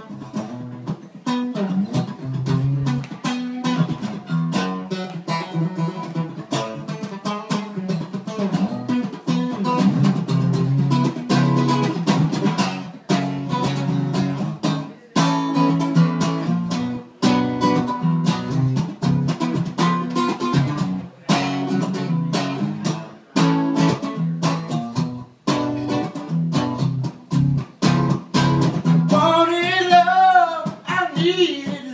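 Solo acoustic guitar strummed in a steady rhythmic pattern, an instrumental intro with short breaks between phrases.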